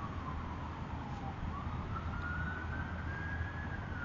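Emergency-vehicle siren on a slow wail: its single tone falls for the first second and a half, rises for about two seconds, and starts to fall again near the end, over a steady low rumble.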